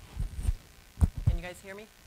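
Low, dull thumps of a lectern microphone being handled or bumped, in two clusters, near the start and about a second in. A few brief murmured syllables are heard between them.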